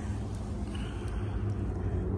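Steady low rumble with a faint hiss above it.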